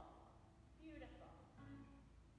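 Near silence: the singing and guitar cut off abruptly at the start, as the failing cellphone microphone drops out. Two faint, muffled bits of voice follow, about a second in and near the end.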